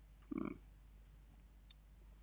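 Mostly quiet room tone, broken by one short low sound about a third of a second in and two faint clicks a little past halfway.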